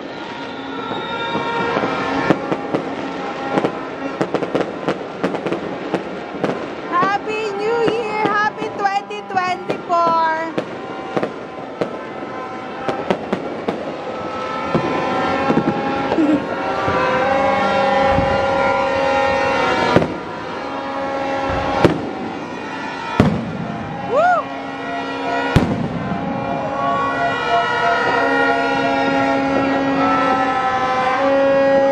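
New Year's fireworks and firecrackers going off around the city: a steady scatter of bangs, with several louder, closer bangs in the second half. Horns sound in long held notes underneath.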